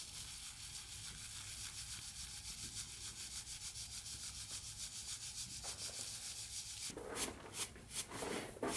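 Grain being shaken through a wooden-rimmed drum sieve over a straw basket: a steady, rasping hiss with a fast, even rhythm of shakes. Near the end it gives way to a few louder, separate swishes as grain is tossed in a flat straw basket.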